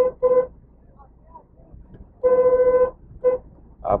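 A vehicle horn honking at one steady pitch: two short beeps at the start, a longer blast a little over two seconds in, then one more short beep.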